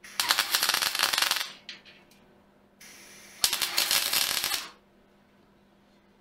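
Electric arc welding on thin-wall steel box section: two short crackling bursts of a little over a second each, a couple of seconds apart, typical of tack welds.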